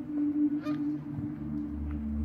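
A Canada goose gives a single honk about half a second in, over a steady low drone of background music.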